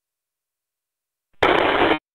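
A short burst of loud radio static, the hiss of an FM receiver's squelch opening on GMRS net audio, lasting about half a second near the end and cutting off abruptly.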